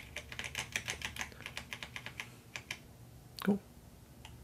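Computer keyboard typing: a quick run of keystrokes for about two seconds, then a few more keystrokes shortly after.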